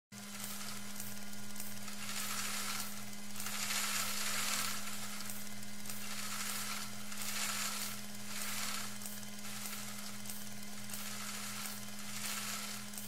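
A steady hiss over a low, even hum, the hiss swelling and fading every second or two.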